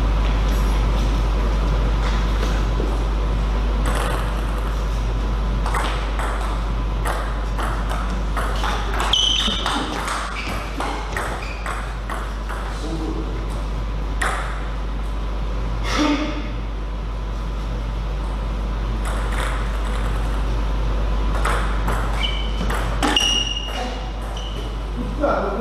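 Table tennis rallies: a plastic ball is struck by rubber-faced bats and bounces on the table in quick, irregular clicks. A steady low hum runs underneath.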